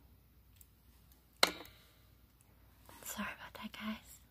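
A single sharp metallic click with a brief ring as small jewelry pliers work a jump ring and clasp on a metal chain. Near the end comes a soft, whispered muttering voice.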